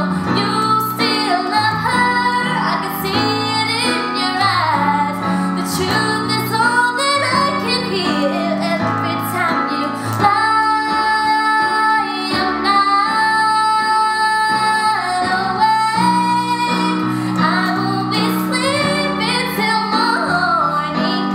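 A woman singing a slow ballad over a Roland digital keyboard played with a piano sound, holding one long note about halfway through.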